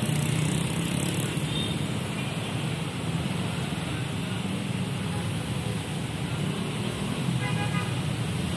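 Steady rumble of a passenger train running along the track as its carriages move away round a curve. A few short high tones come in about seven and a half seconds in.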